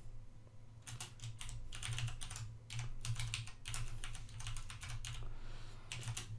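Typing on a computer keyboard: runs of quick keystrokes starting about a second in, with short pauses between the runs.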